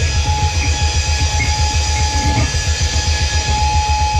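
Live metal music from drum kit and electric guitar: a rapid, even run of bass drum kicks with a single high guitar note held steadily over it, starting just after the beginning.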